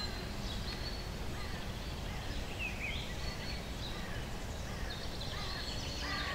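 Outdoor ambience: a steady low background rumble with birds chirping now and then, a few short rising and falling calls in the middle.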